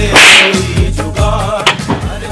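A sharp, whip-like swish sound effect, the sound of a comic slap, about a third of a second long right at the start, over background music with a steady bass beat.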